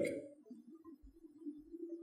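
A man's voice trailing off, then a quiet pause holding only a faint low hum.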